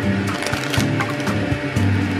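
Crackling and rustling of foil, plastic and paper sachets being pulled out of a paper instant-noodle cup, a quick run of small crinkles, over background music.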